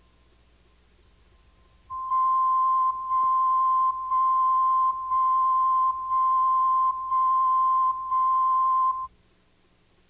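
Countdown beep tone on a videotape program leader: a single steady high beep pulsed seven times, once a second, each beep close to a second long with the tone only dipping between beeps. It starts about two seconds in and cuts off about nine seconds in, over a faint hum.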